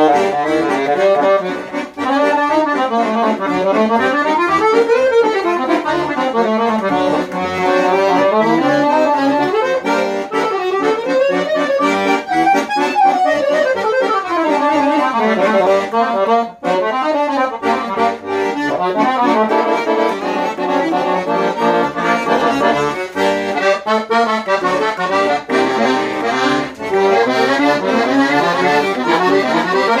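Valentini Professional Casotto piano accordion being played: a melody with runs rising and falling over a bass-button accompaniment, the bellows working steadily, with a brief break about halfway through.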